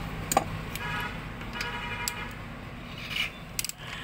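Hand tools and parts being handled at a scooter's cylinder head cover as a socket wrench is set onto a cover bolt: a few sharp metal clicks, the last ones in a quick cluster near the end, with faint rubbing between them.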